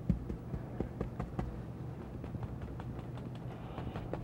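Bristle paint brush tapped lightly and repeatedly against an oil-painted canvas, a quick, uneven run of soft taps several times a second, laying on soft grass highlights.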